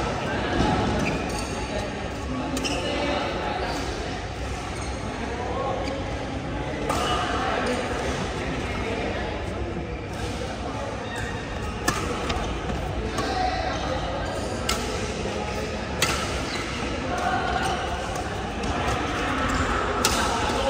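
Badminton rackets striking a shuttlecock during a doubles rally: sharp hits, irregularly spaced a second to a few seconds apart, over indistinct voices.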